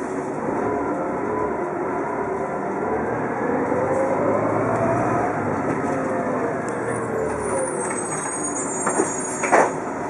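Inside a TTC Orion V transit bus on the move: the engine and drivetrain run with a whine that climbs in pitch as the bus gathers speed, then falls away. Near the end a faint high squeal and a couple of sharp rattles or knocks come in.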